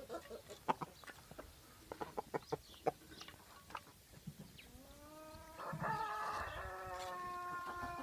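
Chickens clucking with short calls and sharp clicks, then one long drawn-out call that rises at its start and holds from about five seconds in, the loudest sound here.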